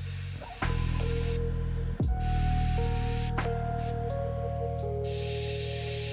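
Background music with held notes over a steady bass, and the hiss of a gravity-feed airbrush spraying paint in bursts, strongest about the first second and in the last second.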